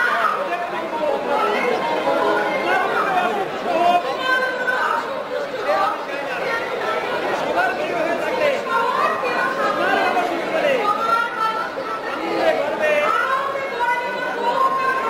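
Actors' spoken stage dialogue, with no other distinct sound.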